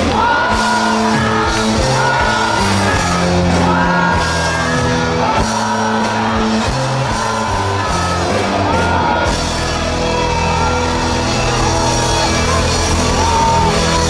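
Live pop-rock band playing loud through a concert sound system, with sung vocal lines held over bass, guitar and drums.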